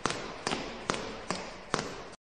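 A steady rhythm of sharp knocks, a little over two a second, over a constant hiss.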